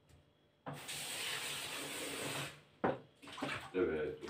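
Kitchen tap running in a single burst of about two seconds, water splashing while something is rinsed under it. It stops abruptly and is followed by a sharp knock.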